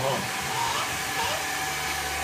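A hair dryer running steadily: a constant rush of blown air with a low hum beneath it.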